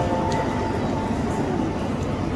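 Busy mainline railway station concourse ambience: a steady wash of crowd noise and hall echo. The last few held notes of a melody fade out in the first second or so.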